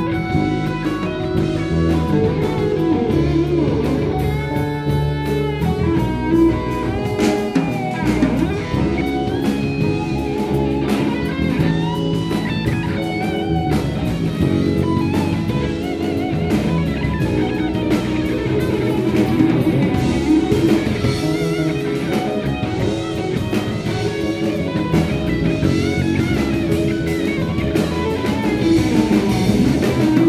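A live instrumental band plays on: an electric guitar on a Fender, with bass, keyboards and drums.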